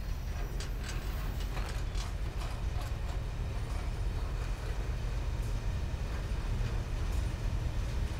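Slow-moving freight train rolling past, the many wheels of a Schnabel heavy-load car's multi-axle trucks clicking and clanking irregularly on the rails over a steady low rumble.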